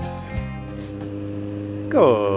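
Guitar background music ends with a last plucked note about half a second in. It gives way to the steady engine and wind noise of a Kawasaki Z750R inline-four cruising on the road.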